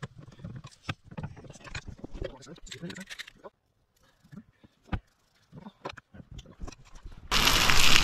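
Indistinct voice sounds and a few light knocks, then, about seven seconds in, a sudden loud, steady sizzle as a raw ribeye steak sears in a hot skillet over a campfire.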